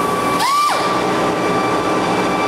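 Pneumatic grinder running against a steel truck frame: a steady high whine over grinding noise. About half a second in the whine drops, then climbs back up to speed as the trigger is let off and squeezed again.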